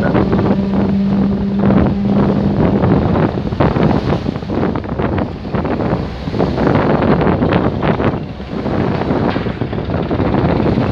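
Strong wind buffeting the microphone in irregular gusts, over choppy river water splashing against the side of the vessel. A steady low hum runs under it for the first two or three seconds.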